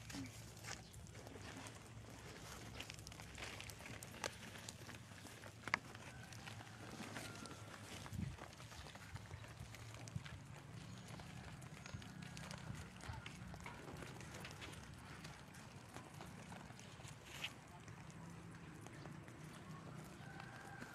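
Faint rustling and a few soft, scattered knocks as hands firm soil into plastic seedling polybags, over a low background murmur.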